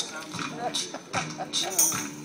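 Short, high vocal sounds from a small child and a man's voice, over an acoustic guitar and several sharp taps.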